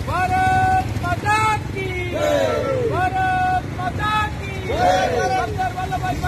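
A group of people chanting slogans in call and response: one voice calls out in long held notes and several voices answer together, over a steady low rumble.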